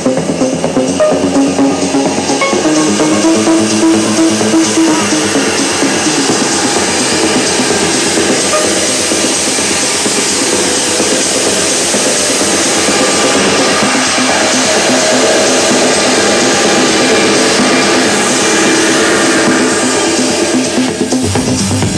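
Techno DJ mix: the beat runs for the first few seconds, then the track thins into a breakdown carried by a long hissing noise swell.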